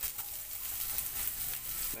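Chopped onions sizzling in hot oil in a nonstick pan, just tipped in and being stirred with a wooden spoon: a steady frying hiss with light scrapes of the spoon.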